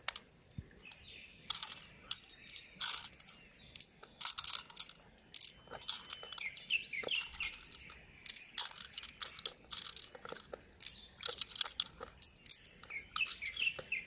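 Small pearls clicking and clinking against one another and the mussel shell as fingers pick them from the flesh into a palm. A bird chirps a quick run of short notes about halfway through and again near the end.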